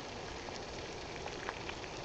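Water boiling in a pot: a steady bubbling hiss with a few faint small pops.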